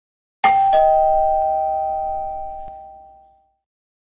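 Two-tone doorbell chime, a 'ding-dong': a higher note about half a second in, then a lower note a third of a second later. Both ring on and fade away over about three seconds.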